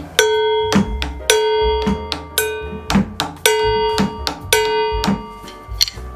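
Drum kit played with wooden drumsticks in a steady groove. A bright, ringing metallic hit sounds about once a second, alternating with duller drum hits over low kick-drum thumps.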